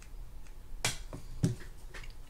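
Small sharp clicks from a mini screwdriver and the metal bail arm assembly of a Shimano Spirex 2500FG spinning reel as a screw is driven in. The two loudest clicks come about a second in and half a second later.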